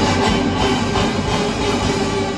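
Marching show band playing a loud full passage: dense drum hits under steady held notes from the band.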